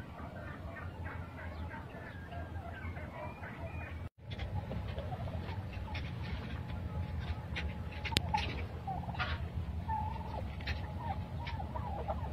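A flock of domestic turkeys calling and gobbling over a steady low rumble. The sound cuts out for a moment about four seconds in, then the calls go on, closer and sharper.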